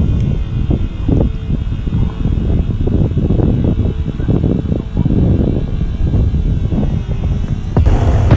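Wind buffeting an outdoor camera microphone: a heavy, irregular low rumble. Near the end it switches abruptly to a steadier rumble.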